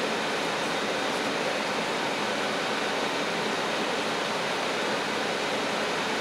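A steady, even hiss of background noise that does not change, with no distinct events in it.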